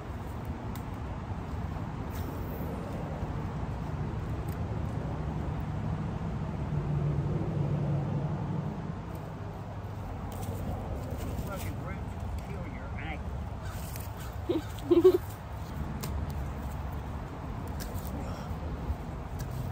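Steady low outdoor background noise, with one brief, loud pitched sound about fifteen seconds in.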